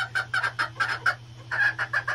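Young chickens clucking in quick runs of short calls, about five a second, with a brief pause a little past the middle. A fan in the coop hums steadily underneath.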